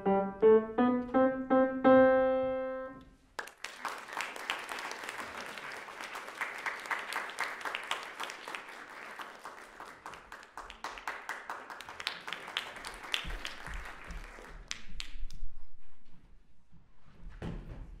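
A grand piano plays the last few notes of a short piece, ending on a held chord that dies away about three seconds in. An audience then applauds for about ten seconds before the clapping fades out.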